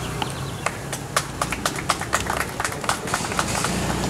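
Scattered applause from a small group: distinct, irregular hand claps that start just after the speech ends and die out shortly before the end.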